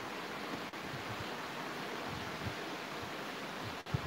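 Steady hiss of room noise picked up by a live-stream microphone, with a brief faint bump just before the end.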